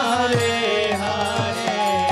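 Devotional kirtan: a man sings a chant into a microphone over a sustained harmonium melody, with regular mridanga drum strokes.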